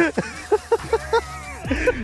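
A man laughing in a string of short, evenly spaced bursts.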